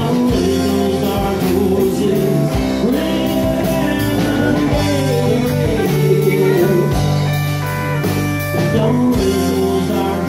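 Live country band playing a song, with electric guitar, acoustic guitar, bass and drums.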